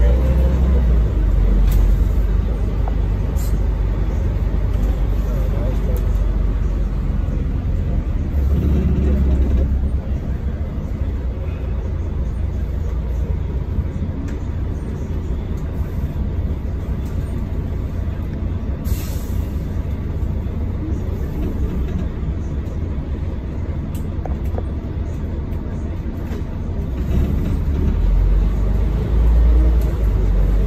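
Inside a Volvo B12BLE bus on the move: its rear-mounted six-cylinder diesel and drivetrain run with a steady low rumble over road noise. The rumble grows louder briefly near the start, about nine seconds in, and again near the end. A short hiss comes about nineteen seconds in.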